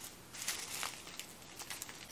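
Small plastic zip-lock bags of sprinkles crinkling faintly as they are handled and shuffled, with a few light clicks. The rustle is a little louder about half a second in.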